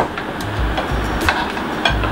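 A glass plate set down on a table with a sharp clack, followed by a few lighter clicks and low knocks as the dinner plates are handled, over steady room hiss.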